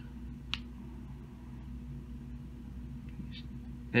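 A single light click about half a second in as the metal airflow control ring of a rebuildable dripping atomizer is turned by hand, over a low steady hum.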